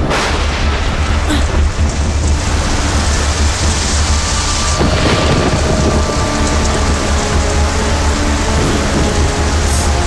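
A thunderclap right at the start, then steady heavy rain with a low thunder rumble, and another crack about five seconds in. Soft background music with held notes runs underneath.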